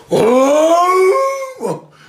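A man's loud, drawn-out vocal cry lasting about a second and a half, its pitch rising as it goes: a voiced imitation of a sound he heard.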